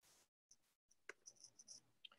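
Near silence: faint room tone, with one faint click a little after a second in.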